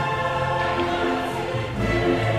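Choral music: a choir singing held notes that change in steps.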